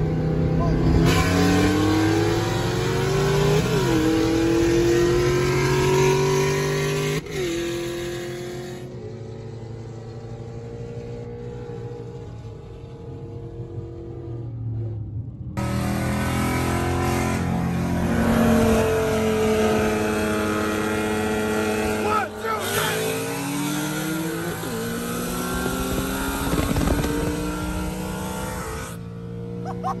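5.0 V8 at wide-open throttle heard from inside the car's cabin, revs climbing and dropping at upshifts about four and seven seconds in, then easing off. After a cut, a second full-throttle pull with another upshift about 22 seconds in.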